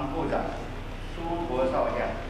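A man's voice reading aloud from a prepared text, over a steady low hum.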